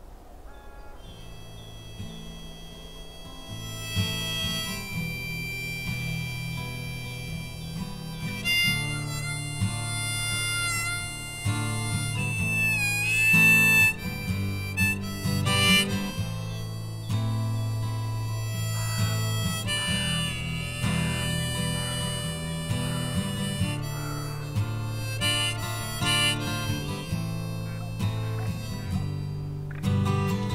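Harmonica playing a melody with bent notes over steady low accompaniment, in an instrumental passage of a folk-rock song. It fades in about a second in and grows louder about four seconds in.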